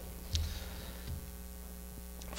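Steady low electrical mains hum, with a single soft click about a third of a second in.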